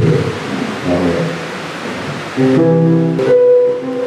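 Instrumental music: a few notes at first, then from about halfway in a steady chord is held.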